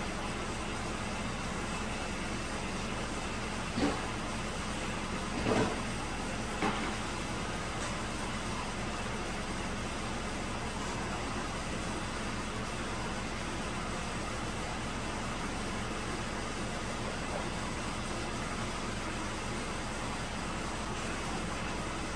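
A 2009 Chevrolet Malibu Hybrid's 2.4-litre four-cylinder engine idling steadily, at about 545 rpm, with a few brief knocks and rustles early on in the first seven seconds.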